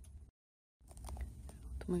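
Low steady background hum with a few faint clicks, broken by half a second of dead silence at an edit cut, then a voice starts speaking near the end.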